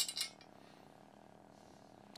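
Two short, light clicks of small hardware being handled, a screw and a plastic washer being tried together, right at the start, then faint room tone.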